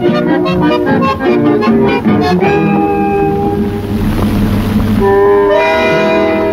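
Accordion-led chamamé music from a recording. Quick rhythmic notes give way to long held chords about two seconds in, with a low rumble swelling briefly past the middle.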